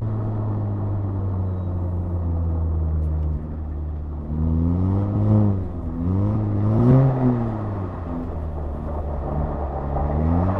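2018 VW Golf R's turbocharged 2.0-litre four-cylinder, fitted with a cold air intake and resonator delete, heard from inside the cabin. It holds a steady pitch for about three seconds and drops. It then revs up and falls back twice, and starts rising again near the end.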